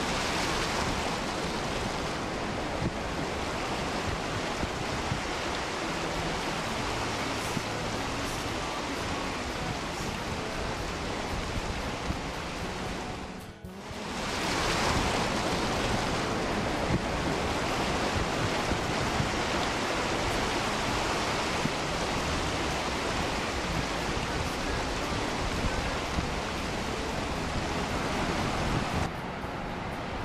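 Ocean surf breaking on rocks, with wind on the microphone, as a steady rushing noise that drops out briefly about halfway through.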